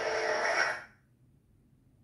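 Lightsaber replica's Golden Harvest v3 soundboard playing its blade retraction (power-off) sound through the hilt speaker: a loud, noisy swoosh that cuts off about a second in.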